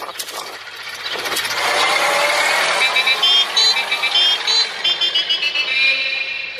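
Cartoon sound effect of a small car driving off, a rushing engine noise that builds up. About halfway through comes a quick run of short, high-pitched notes, like a horn tune.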